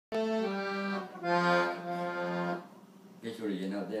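Piano accordion playing a short phrase of held chords that stops about two and a half seconds in; a man's voice starts talking near the end.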